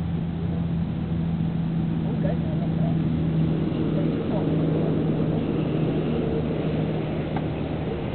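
A steady low mechanical hum, like a motor running, holds at an even pitch throughout.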